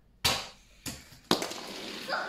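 A small plastic toy car launched across a tabletop, knocking and bouncing off the sweets laid out on it: three sharp knocks about half a second apart, the last the loudest, then a quieter steady noise.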